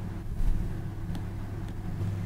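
Steady low hum of room or recording-system background noise, with a few faint ticks of a stylus touching a tablet screen as handwriting begins.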